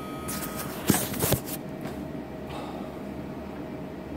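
Rustling and handling noise from the recording phone being moved, with two sharp knocks about a second in, over a faint steady electrical hum.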